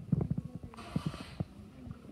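Hippopotamus chewing watermelon: irregular wet crunches and squelches, a quick cluster at the start and a few more later, with a brief hiss just under a second in.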